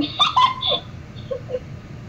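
High-pitched giggling: a quick burst of squealing laughs in the first second, then a few softer ones.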